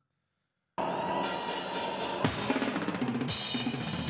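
Silence, then under a second in a drum kit comes in suddenly: fast black-metal drumming, rapid cymbal and hi-hat strokes over snare and bass drum.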